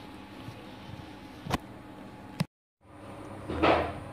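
Quiet room tone with two sharp clicks, the second just before the sound drops out into dead silence for a moment where the recording is cut. A short rush of noise follows near the end.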